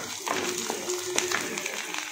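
Indistinct voices in a small room, with a few short light clicks.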